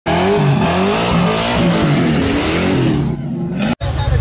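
A car engine revving hard, its pitch rising and falling repeatedly. It drops away about three seconds in, and the sound cuts off abruptly just before the end.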